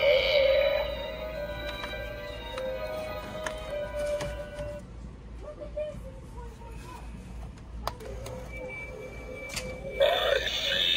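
Spooky Halloween music from a light-up skull crystal ball prop, with held notes that stop about five seconds in, leaving fainter sound and a couple of sharp clicks near the end.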